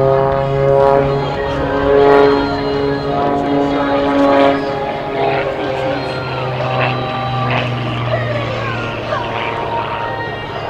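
Extra 300 aerobatic plane's six-cylinder piston engine and propeller running in flight, the drone sliding up and down in pitch as it manoeuvres.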